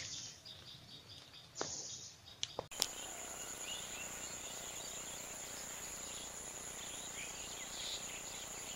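Faint outdoor ambience: a steady, high-pitched insect drone with scattered faint bird chirps, setting in about three seconds in. Before it come a few light clicks and a brief rustle.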